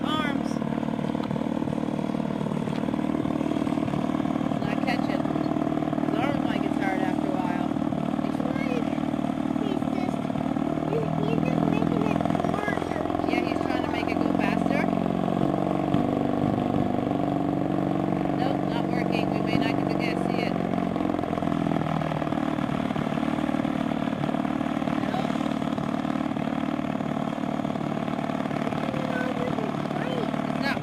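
Single-seat gyrocopter's engine running steadily at low speed, its pitch rising and falling for several seconds through the middle.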